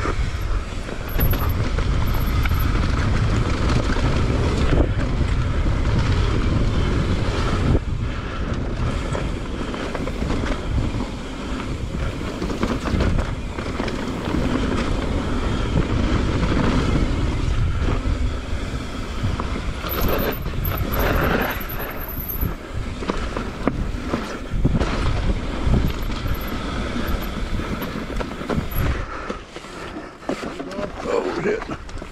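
Mountain bike rolling down a dirt singletrack trail: wind rushing over the action camera's microphone, with the tyres and bike rattling over the uneven ground.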